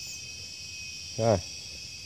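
Steady high-pitched chorus of insects, likely crickets, running unbroken, with a man's short "ah" about a second in.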